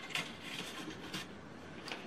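Faint rustling and a few light taps of a folded paper card being handled and set down on a cutting mat.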